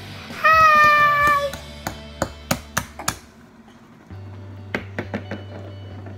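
A single high, drawn-out vocal call, falling slightly in pitch, lasting about a second near the start, followed by a run of light clicks and taps from small plastic toy pieces being handled. A low steady hum comes in about four seconds in.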